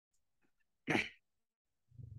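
A single short burst of breath noise from a person, about a second in, of the cough or sneeze kind.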